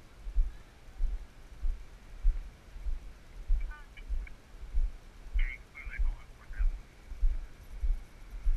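Footsteps on a concrete sidewalk thudding through a body-worn GoPro, a steady walking rhythm of about one and a half to two thumps a second. A few faint, short high-pitched sounds come in about halfway through.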